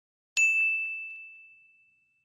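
A single bright, bell-like ding: a notification-chime sound effect marking the subscribe bell being switched on. It strikes about a third of a second in and fades out over about a second and a half.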